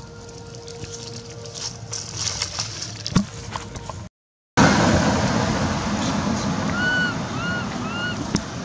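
Crackling and rustling of dry leaves, with a sharp click just after 3 s. After a brief dropout a louder steady outdoor noise takes over, with a few short, arched chirp-like calls near the end.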